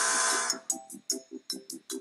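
Electronic keyboard music: a loud rush of noise that fades out about half a second in, then a quick run of short, clipped keyboard notes, about six a second.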